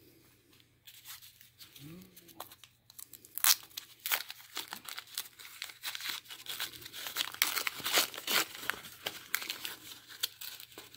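Brown kraft packing paper being crinkled and torn open by hand. After a quiet start, a quick run of sharp, irregular rustles and rips begins about three seconds in.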